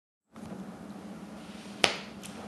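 Steady low room hum as the recording begins, with a single sharp click near the end as the webcam setup is handled.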